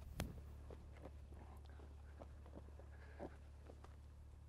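Near silence: faint footsteps on tarmac, a soft tick about every half second, over a steady low hum, with one sharper click just after the start.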